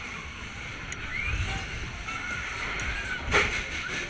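Onboard sound of the Voodoo Jumper fairground ride in motion: a steady, low rumble of the running ride, with a sharp knock a little over three seconds in.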